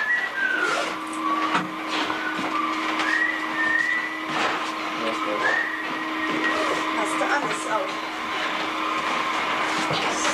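A person whistling a few drawn-out, sliding notes, with background voices, a steady hum and a few knocks of things being handled.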